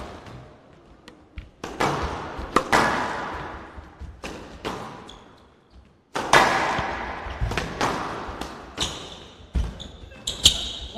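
Squash ball cracking off rackets and the walls of a glass court during a rally. The sharp hits come at an irregular pace and each rings out in a large hall, with a short lull before the loudest strike just after six seconds.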